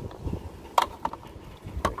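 Plastic twist-lock bulb sockets being rotated into a Ram 1500's high-mount brake light housing, with two sharp clicks about a second apart and a couple of fainter ones between as they lock in.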